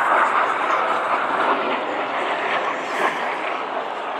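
Steady rushing jet noise of L-39 Albatros jet trainers flying aerobatics overhead at a distance.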